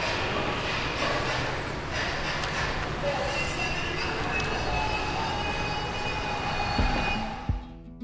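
Steady rushing background noise with a few faint steady tones, fading out about seven and a half seconds in as plucked acoustic guitar music begins.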